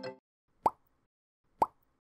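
Two short pop sound effects about a second apart, each a quick upward blip, for an animated cursor clicking on-screen buttons. The tail of a jingle fades out at the very start.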